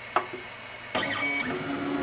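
Monoprice Select Mini (Malyan) desktop 3D printer starting a print. The control knob clicks once, then about a second in the printer's motors start up with a steady hum and a thin whine.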